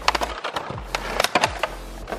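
Clear plastic packaging crinkling and crackling as it is pulled off a toy ball by hand, in a run of irregular sharp crackles.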